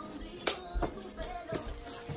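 A few light clinks of tableware, about half a second, a second and a second and a half in, over faint background music.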